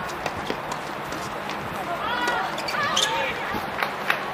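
Tennis balls struck with rackets and bouncing on a hard court, a few sharp pops in the first second and another near the end. Players' voices call out twice, about two and three seconds in.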